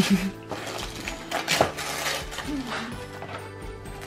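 Wrapping paper being torn off a gift box in a few short rips and rustles, the loudest about one and a half seconds in, over steady background music.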